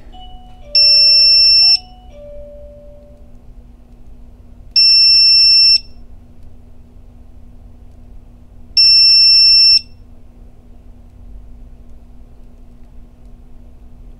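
Begode EX30 electric unicycle's buzzer giving a long, high electronic beep about every four seconds, three times, while its firmware is being flashed. A softer low two-note tone sounds in the first few seconds, and a faint steady hum runs underneath.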